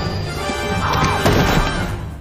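Film soundtrack: music with a crash about a second in, as the squeal of the locomotive's wheels fades away.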